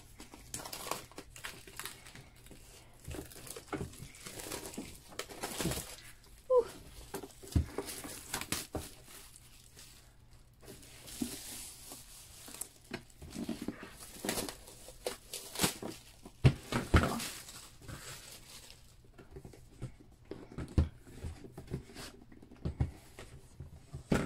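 Clear plastic shrink-wrap being torn and peeled off a cardboard box, crinkling and crackling in irregular bursts, with a few light knocks as the box is handled.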